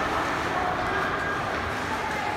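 Ice hockey rink ambience: a steady wash of skates scraping the ice and echoing arena noise, with faint distant calls.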